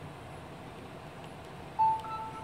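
Faint hiss, then near the end a loud electronic beep from a tablet: one steady tone that starts suddenly and holds, the device's chime as it comes back on after crashing.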